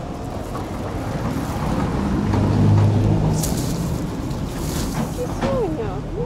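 A motor vehicle passing, its low engine hum swelling to loudest about halfway through and then fading, over wind rumble on the microphone.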